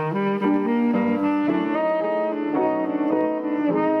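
Tenor saxophone playing a jazz melody line of held and moving notes, with piano accompaniment.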